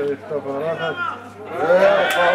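People near the microphone laughing and calling out, ending in a long drawn-out vocal call.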